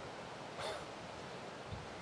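Quiet outdoor background in a pause between speech, with one faint short sound about half a second in and a soft low thump near the end.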